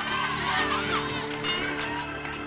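Gospel band playing between sung lines: keyboard chords held from about half a second in, over electric bass, with voices calling out above the music.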